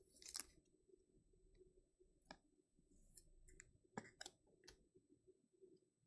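Near silence broken by faint handling sounds of trading cards and rigid plastic top loaders: a brief scrape about half a second in, then a handful of separate light clicks.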